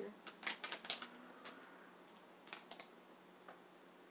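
A small mini tarot deck shuffled by hand: a quick run of light card clicks and snaps in the first second, then a few more around the middle and one near the end.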